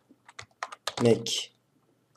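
Typing on a computer keyboard: a quick run of about half a dozen keystrokes in the first second as a word is entered into a document search, followed by a brief spoken sound.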